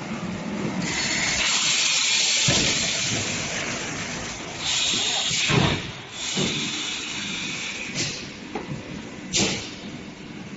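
A plastic vacuum forming and trimming machine's pneumatics, started on command: compressed air hisses in a long blast for about three seconds, then in several shorter bursts with a few knocks from the machine.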